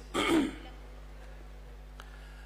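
A man briefly clears his throat at a microphone, followed by a steady low electrical hum.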